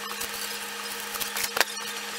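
Hands kneading sticky dough on a sheet of wax paper: soft rustling with a few sharp crinkles of the paper, two of them about a second and a half in. A steady low hum runs underneath.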